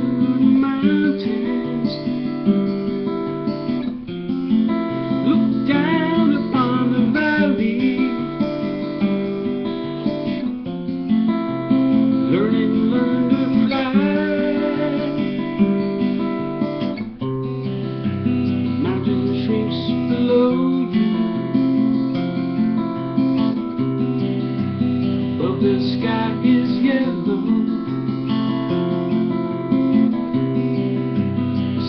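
Acoustic guitar strummed steadily through changing chords.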